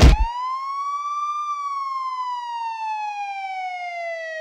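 A brief loud hit as rock music cuts off, then a siren wail: one tone rises for about a second and a half, then falls slowly, beginning to rise again just after the end.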